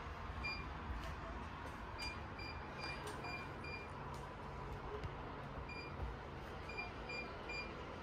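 Touch-control beeper of a Leisure glass-top hob: short, identical high beeps as the controls are pressed, six in the first four seconds and four more near the end, each press stepping the cooking zone's power setting up towards nine to boil the water.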